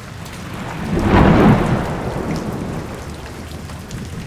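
Steady rain falling, with a rumble of thunder that swells about a second in and then fades.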